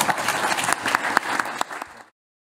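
Audience applauding, a dense patter of many hands clapping that thins out near the end.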